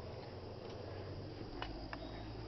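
Quiet steady background hum with a few faint clicks and rustles from the camera being handled.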